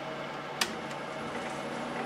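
Warco WM250V bench lathe starting up at its slowest speed without back gear, its spindle and 3-jaw chuck beginning to turn. A sharp click comes about half a second in, then steady running noise with a faint high whine as the spindle speeds up.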